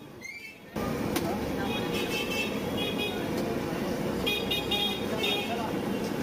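Busy street noise, traffic and voices, that starts abruptly about a second in, with a vehicle horn tooting in two runs of quick repeated beeps.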